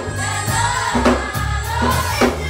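Youth gospel choir singing with a live band: steady bass notes under the voices and a drum hit landing about once every second.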